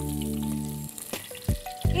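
Curry leaves sizzling in a hot clay pot, with two sharp knocks about a second and a half apart as the pot is set down on the stove. A sustained background music chord plays over it and stops about a second in.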